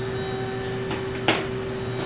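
Steady machine hum with a few fixed tones, with one sharp click a little after a second in.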